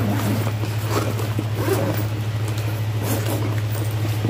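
Zipper of a fabric makeup bag being worked open, with soft rustling of the fabric as it is handled, over a steady low hum.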